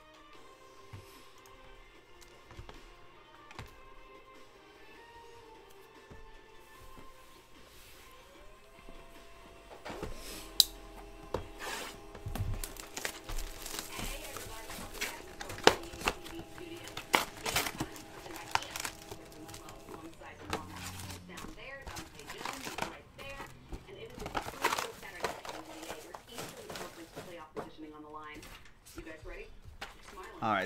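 Cardboard boxes and foil card packs being handled, with crinkling wrappers and sharp clicks and knocks. About nine seconds in, a printer whirs up in pitch and runs steadily for about ten seconds while it prints a page.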